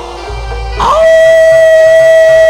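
A man's long drawn-out shout over a loudspeaker: about a second in, it glides up into one high pitch and is held steadily. A low hum sits underneath.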